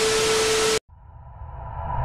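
A burst of TV-style static hiss with a steady mid-pitched tone, the glitch transition sound effect, cutting off suddenly just under a second in. A quiet swell of music then slowly rises.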